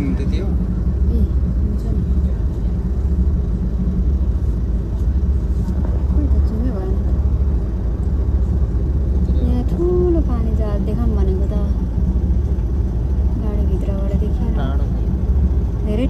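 Steady low engine and road rumble inside a moving bus, with faint voices of passengers talking now and then.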